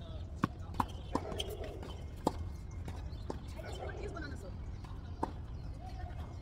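Tennis ball being struck by rackets and bouncing on a hard court during a rally: about six sharp pops at irregular spacing, several close together in the first two seconds. A faint voice and a steady low hum sit underneath.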